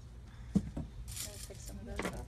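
Small stones poured from a plastic bowl into a glass jar already packed with larger stones. A few sharp clinks come first, then a brief rattling rush as they trickle down between the bigger stones, and a few last clinks.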